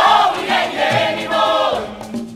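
A choir singing with musical accompaniment, coming in with a loud swell at the start.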